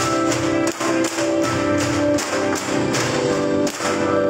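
Music with a melody, over which bamboo dance poles knock in a steady rhythm of about two to three knocks a second as they are clapped together and against the floor.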